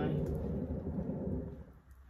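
Paint spinner turning with a canvas on it: a low rumble that winds down and dies away about a second and a half in as the spin stops.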